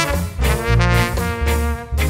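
Live ska band's horn section, trumpet and trombone, playing held melody notes together over a strong bass line, with a short break between phrases near the end.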